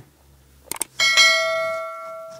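Subscribe-button animation sound effect: two quick mouse clicks, then about a second in a bright notification-bell chime that rings and slowly fades.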